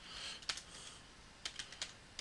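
Faint keystrokes and clicks on a computer keyboard and mouse: a single click about half a second in, then a quick run of four or five near the end.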